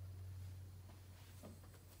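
Near silence: a faint steady low hum, with a few faint ticks partway through.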